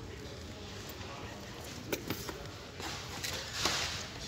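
Supermarket aisle background with faint voices, a single click about two seconds in, and a short rustle near the end as a plastic-coated pencil case is taken from the shelf.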